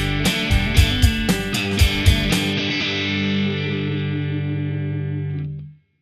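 Rock band outro with drums and distorted electric guitar played through a Mooer Micro Preamp into an amp. The drums stop about two and a half seconds in, and a final held chord rings on, then cuts off just before the end.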